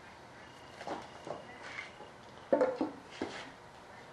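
A few short knocks and scrapes of objects being handled on a workbench, the loudest about two and a half seconds in.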